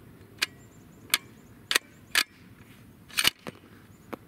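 Bolt of a custom 7mm PRC bolt-action rifle being worked after a shot: about six short, sharp metallic clicks spread over the few seconds, the loudest about three seconds in. The bolt lift still comes with a hard 'clicker', a pressure sign of an overly hot H1000 load.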